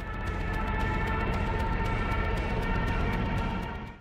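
Tense film soundtrack: a sustained, steady high drone over a low rumble, with a fast ticking on top. It swells in at the start and eases off near the end.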